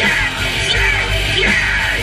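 A live emo rock band playing loud, with distorted electric guitars, bass and drums and a vocalist yelling into the microphone over them.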